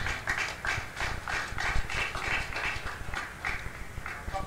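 Children whispering to each other close to a microphone: a quick run of breathy, toneless syllables.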